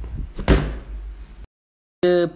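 A loud thump about half a second in, from the phone being moved and handled against its microphone, then the sound cuts off abruptly into dead silence about a second and a half in.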